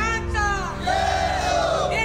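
A crowd of protesters chanting a slogan together in loud unison voices, with one long drawn-out shout in the second half.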